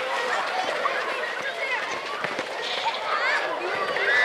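Scattered high-pitched voices calling and shouting across an outdoor youth football pitch, with a few short sharp knocks, the clearest about two seconds in.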